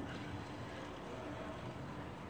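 Faint, steady city background noise, a low hum with no distinct event in it.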